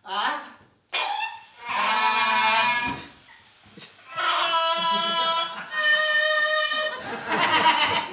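Cartoon-style sound effects: a few short bursts, then a pitched tone lasting about a second, then two long held tones one after the other, in time with the bow tie being stretched out like elastic.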